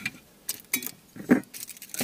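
Thin metal stove parts clinking and clattering as they are pulled apart and set down by hand: a handful of short, sharp clicks, the loudest just past a second in.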